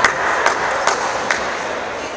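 Four sharp cracks about half a second apart, growing weaker, over the murmur of a crowd in a large hall.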